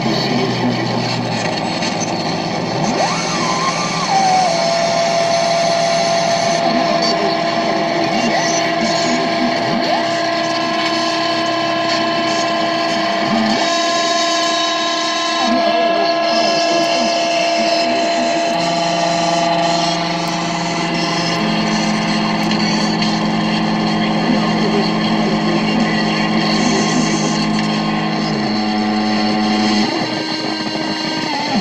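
Improvised electronic noise music from a synthesizer fed through a chain of guitar effects pedals: layered steady drones and held tones over dense hiss. One tone slides down in pitch about four seconds in, and lower held tones come in past the middle.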